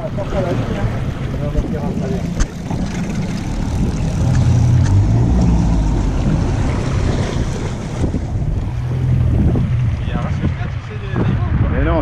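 Yamaha outboard motor running with the boat under way, with wind buffeting the microphone and water rushing past the hull.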